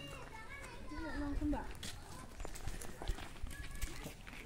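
Faint, distant voices with a few light ticks, mostly in the first second and a half.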